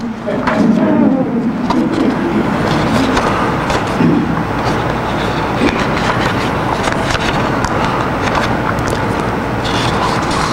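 Audience applauding, a steady dense patter of many hands clapping.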